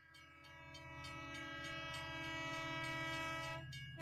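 Train horn sound effect: one steady horn blast over a low rumbling of the train, fading in about half a second in and swelling a little before cutting off just before the end.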